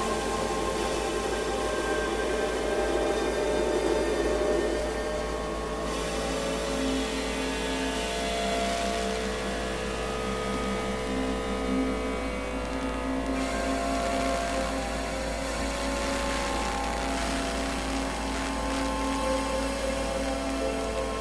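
Experimental ambient synthesizer drones: layered held tones at several pitches, with new notes entering and others dropping out, over a hissy noise layer and a steady deep hum. There is no beat.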